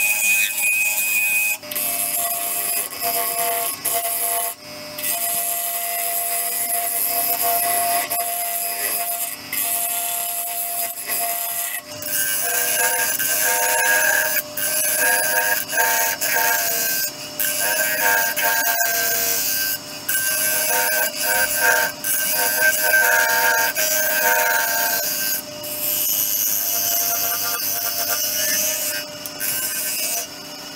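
Bowl gouge cutting inside a spinning madrone-and-resin bowl on a wood lathe: a steady hiss of the cut with several steady tones over it, broken by many brief drops as the tool comes off the wood.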